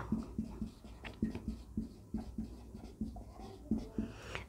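Faint writing sounds: a pen moving over a surface in short, irregular strokes.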